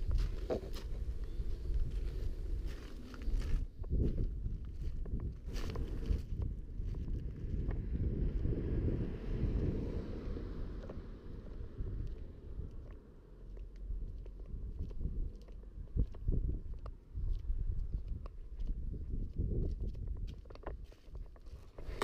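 Low wind rumble on the camera microphone, with occasional knocks and bumps from the camera being handled.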